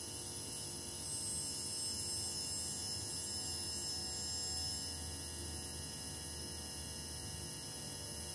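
Low, steady electrical hum and buzz from a powered-on hi-fi stereo set with a lit vacuum fluorescent display, with several faint high-pitched steady tones over it.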